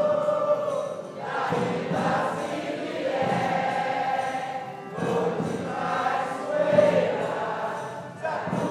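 A congado group singing a devotional song together, a chorus of voices with short breaks between phrases about one and five seconds in.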